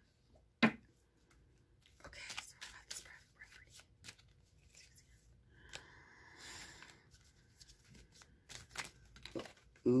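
A deck of oracle cards being shuffled by hand: faint, uneven rustling and soft clicking of the cards, with one sharper tap about half a second in.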